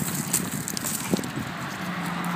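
A black Labrador worrying a cloth pillow on loose gravel: irregular scuffs and crunches of paws and stones, with soft thuds as the pillow is shaken and dropped.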